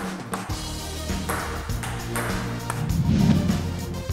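Outro music with a steady beat, starting about half a second in, with a table tennis ball being hit with a paddle as it begins.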